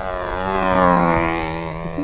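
Control-line model airplane's glow engine buzzing in flight, its pitch sweeping up and down as the plane circles past, loudest about a second in.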